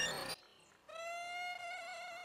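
Violin music cutting off about a third of a second in, then after a short silence a single quiet, steady note held on.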